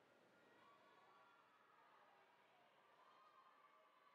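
Near silence: only a faint background hiss.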